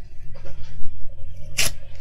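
Low steady rumble of a tractor cutting hedges outside, with close handling of wide double-sided tape and a ruler on the desk, including one sharp crackle about one and a half seconds in.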